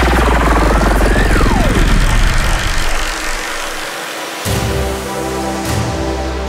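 Riddim-style dubstep at 150 BPM: heavy sub-bass with a synth sweep that rises, then dives sharply about a second in, before the bass thins out. A new section of sustained synth chords comes in about four and a half seconds in.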